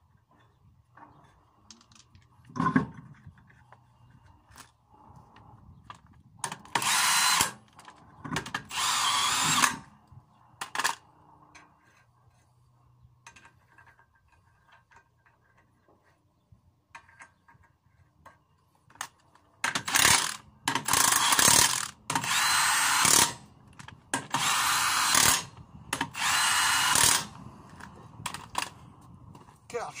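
Cordless impact wrench spinning on and tightening a van's wheel nuts to refit the wheel, in short runs: two about seven seconds in, then four more from about twenty seconds. Between the runs, light clicks and knocks of the nuts being started by hand.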